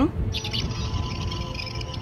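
Electronic sci-fi sound effect of chirping and warbling, the high flickering sound of a device at work, over a faint steady tone and low hum.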